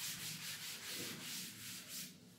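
Chalk writing being erased from a chalkboard in quick back-and-forth rubbing strokes.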